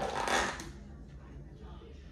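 Clear plastic lid of a takeout food bowl being pried off, a brief crinkly rustle in the first half second, followed by quiet handling.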